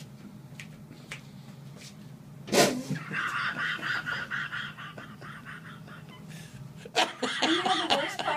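Padded hospital chair cushion letting out a rush of air with a fart-like noise as a person sits down on it, starting about two and a half seconds in and lasting about two seconds. A man's laughter breaks out near the end.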